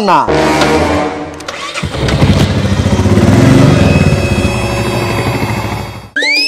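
Motorcycle engine starting about two seconds in and running with an even low pulse, growing louder for a second or so and then holding steady.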